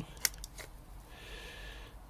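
Digital calipers being closed onto a metal water pump housing: a sharp click, a lighter tick, then a faint brief scrape.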